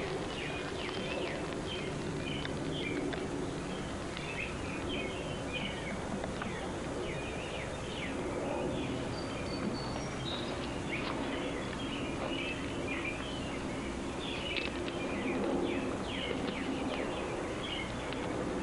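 Birds chirping again and again over a steady outdoor background noise, with a few faint crackles from a burning dry-grass tinder bundle.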